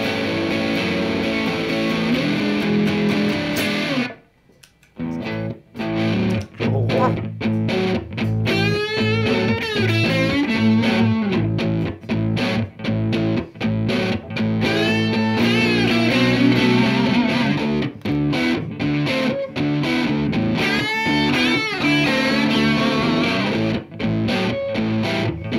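Distorted electric guitar played through a Valeton Dapper Looper Mini looper pedal: a chordal part breaks off briefly about four seconds in, then resumes, with a lead line of bent notes layered over the looped backing.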